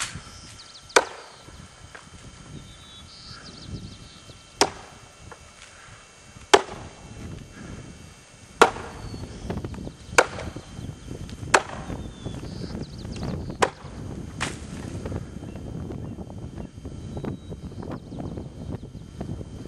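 Axe chopping into a standing log from a springboard: about eight sharp, ringing strokes one to four seconds apart, stopping about fifteen seconds in.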